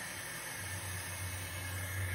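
Steady hiss of a bathroom faucet running water into a balloon stretched over its spout, with a low hum setting in about half a second in.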